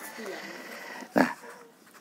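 A dog whining faintly in the background, with a man's short spoken word about a second in.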